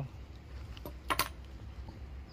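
A few small metallic clicks, a sharp double click about a second in, as a hex key and a small screw are handled at the e-bike's folding stem latch.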